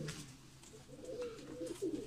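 Faint cooing of domestic pigeons in a loft, a low wavering call in the middle of a quiet stretch.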